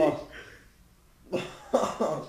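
A person coughing, two short coughs in the second half, after a brief bit of voice at the start.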